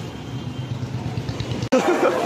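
Motorcycle engine running at low speed in street traffic, a steady low rumble. It cuts off abruptly near the end, giving way to voices.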